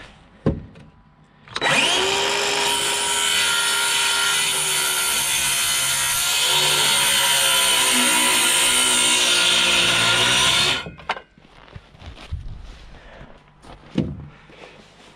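DeWalt cordless circular saw cutting a two-by board to length. It starts about a second and a half in, runs for about nine seconds through the wood, then stops suddenly.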